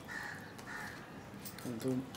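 A crow cawing twice, two short harsh calls in quick succession.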